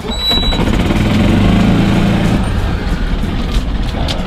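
Golf cart driving along, its motor and wheels running steadily with a low rumble, heard from on board the cart.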